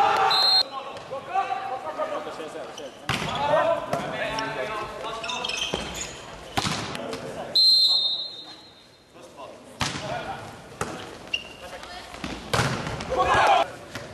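Volleyball play in a large, echoing sports hall: the ball smacks off hands and arms several times and players shout calls. A referee's whistle blows twice, briefly at the start and again for about a second just past halfway.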